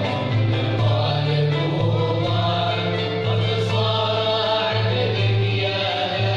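Andalusian music ensemble playing live, lutes, violins and cello together, with the musicians singing in unison over a stepping bass line.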